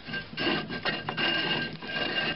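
A Dodge Caravan rear brake drum spun by hand, the brake shoes rubbing lightly inside it with a steady scraping and a faint high whine. The shoes have been adjusted out to sit very close to the drum.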